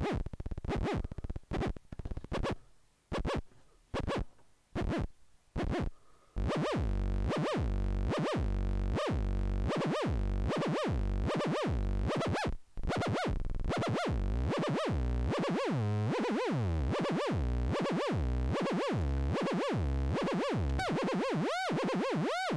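Modular synth "pew-pew" zaps from a Make Noise Maths channel cycling at audio rate as the oscillator, its pitch swept by the other Maths channel through a wave folder. For the first few seconds the sound comes in short, broken blips while a Maths knob is turned. From about six seconds in, it settles into a steady stream of Pac-Man-like pitch sweeps, a little over one a second.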